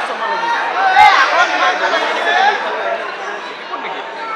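Spectators in the stands chattering, several voices overlapping, with a single sharp thump about a second in.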